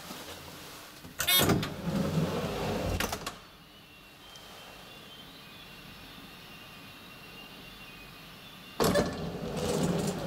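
Luth & Rosén traction elevator starting off with a burst of clattering and scraping, then running quietly through the shaft for several seconds. Near the end another loud clatter comes as the car slows and stops.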